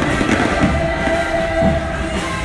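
Loud music with long held notes over a heavy low end, played for a street procession.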